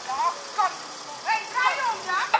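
A woman's high-pitched shouting and crying out in two short bursts, one just after the start and a longer one about two-thirds of the way through, as she resists arrest.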